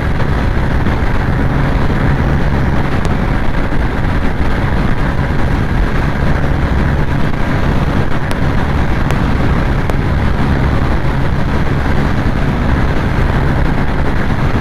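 125 cc single-cylinder motorcycle engine held flat out in fifth gear at about 105 km/h top speed: a steady, unchanging drone mixed with wind rushing past the rider.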